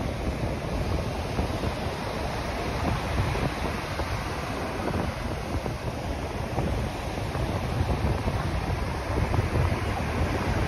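Ocean surf breaking and washing up a sandy beach in a steady rush that swells and eases. Wind buffets the microphone underneath.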